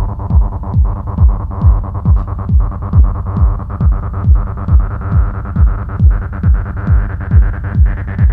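Techno track: a steady four-on-the-floor kick drum, a little over two beats a second, over a sustained synthesizer drone whose upper tone slowly rises in pitch.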